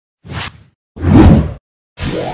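Two whoosh sound effects of an animated logo intro: a short one, then a louder, longer one about a second in.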